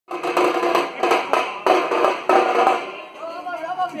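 A street drum band of large bass drums and snare-type side drums beaten with sticks in a fast, loud rhythm. The drumming thins out about three seconds in, and a voice can be heard over it near the end.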